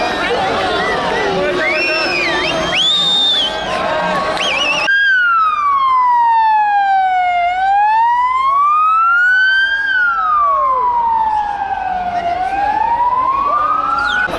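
A crowd shouting and cheering, then about five seconds in a sudden change to an ambulance siren wailing: a slow, steady fall and rise in pitch, each sweep taking about two and a half seconds.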